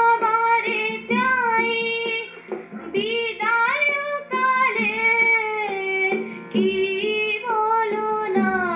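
A young girl singing a Bengali song in phrases of a second or two with bending, ornamented pitch, accompanied by a held harmonium drone and soft tabla strokes.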